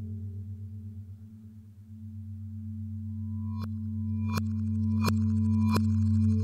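Radiophonic ambient electronic music made from processed recordings of a metal lampshade: low sustained drone tones swelling in loudness, joined in the second half by four evenly spaced sharp strikes, each ringing on.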